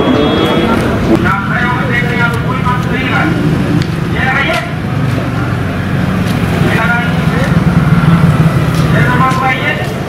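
Men's voices talking indistinctly, in short stretches, over a steady low rumble of vehicle engines running.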